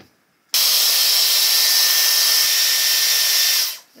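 Handheld hot-air brush styler blowing: it switches on sharply about half a second in, runs as a loud steady rush of air with a faint steady whine in it, and cuts off shortly before the end.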